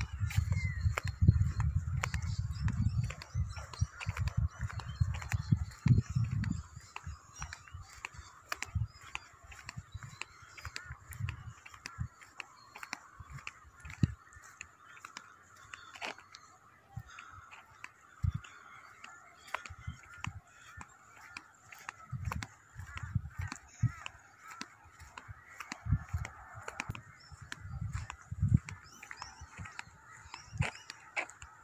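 Outdoor ambience while walking: low gusts of wind on the microphone for the first six seconds or so, footsteps, and birds calling steadily in the background.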